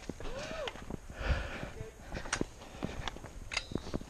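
Footsteps of hikers walking down a dirt and rock trail, with scattered scuffs and knocks.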